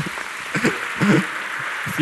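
Audience applauding in a hall, an even clatter throughout, with a few short laughs from a man close to the microphone.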